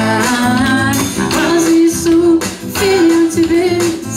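A woman singing a worship song to her own strummed acoustic guitar, holding two long notes in the second half.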